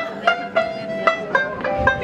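Live acoustic folk band playing an instrumental passage: banjo picking out a run of separate notes over fiddle and Yamaha CP stage piano.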